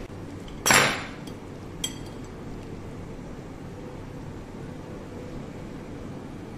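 Metal cutlery against a ceramic plate: one loud clatter about a second in, then a lighter, ringing clink a second later.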